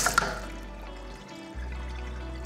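Water rushing through the manual water softener cuts off just after the start as its bypass wheel is turned back to position one, with a couple of sharp clicks from the wheel. Background music carries on underneath.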